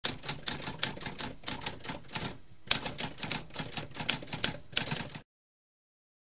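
Typewriter typing: a quick run of key strikes, several a second, with a short pause about two and a half seconds in. It stops abruptly a little after five seconds.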